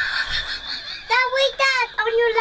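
A young child's high-pitched voice: a breathy drawn-out sound for the first second, then two short high vocal sounds that are not clear words.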